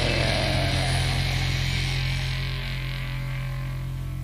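A rock band's last chord ringing out and slowly fading, with a steady amplifier hum underneath.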